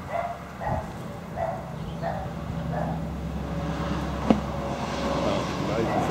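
Short animal calls repeated about five times, evenly spaced roughly two thirds of a second apart, over a steady low hum. A single sharp click comes about four seconds in.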